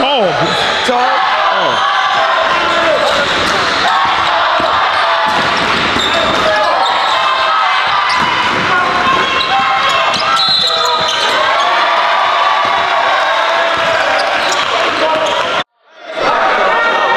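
Basketball being dribbled and bouncing on a gym's hardwood floor during live play, under continuous indistinct shouting and talk from players and onlookers. The sound drops out for a moment near the end.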